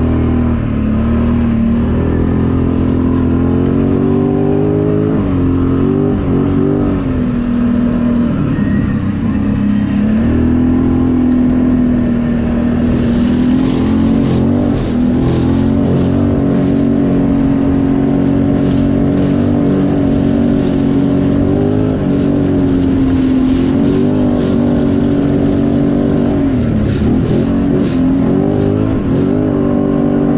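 ATV engine running under riding throttle, its pitch rising and falling again and again as the rider speeds up and eases off. From about halfway through, a rapid crackle of tyres on loose gravel rides over the engine.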